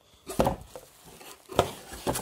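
A packed tarp and its plastic wrapping being handled: soft rustling with two sharp knocks, about half a second in and again near the end.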